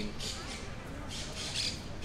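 Bird squawks, a few short harsh calls.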